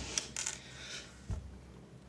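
Light handling noise close to the microphone: a few sharp clicks and a brief rustle near the start, then a soft low thump just past a second in.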